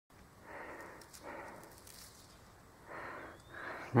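A person breathing audibly: four soft breaths, each about half a second long, with a few faint ticks among them.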